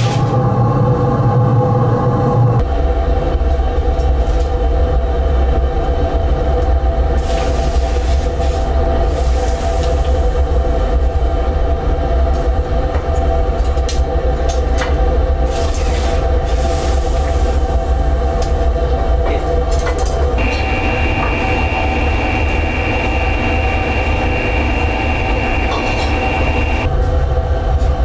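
Raku kiln firing: the fire and its air blower running with a loud, steady deep rumble. The tone shifts abruptly a couple of seconds in, and a high steady whine joins in for several seconds near the end.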